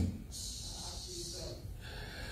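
A man's breath close to a handheld microphone: a soft, airy hiss lasting about a second after his words stop, fading into a fainter breath near the end.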